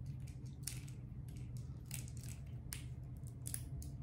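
Small, scattered plastic clicks and scrapes of AA batteries being pressed and seated into a wireless mouse's battery compartment, over a steady low hum.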